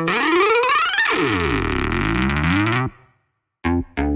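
Electronic synthesizer sound made of several pitches sweeping up and down across one another, cutting off suddenly about three seconds in. After a short silence, two brief synth notes follow near the end.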